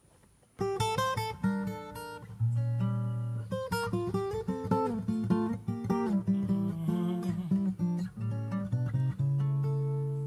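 Acoustic guitar playing a song's introduction, picked notes and strummed chords starting about half a second in and ending on a held, fading chord.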